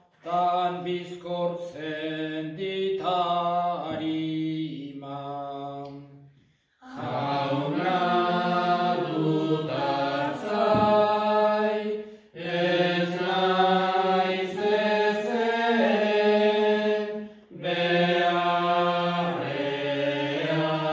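A priest's solo male voice chants the responsorial psalm in Basque, unaccompanied. He sings held, stepwise melodic phrases, about four of them, with brief pauses for breath between.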